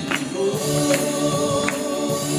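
Gospel song sung by a woman and a man into microphones, with accompaniment and a sharp percussive beat a little faster than once a second.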